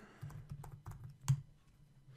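Typing on a computer keyboard: a quick, uneven run of separate key clicks, with one louder keystroke about a second and a half in.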